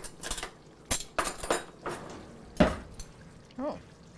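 Spoon clinking and knocking against a cooking pan while the sauce is stirred and scooped for a taste: a string of short, separate clinks, the sharpest a little past halfway.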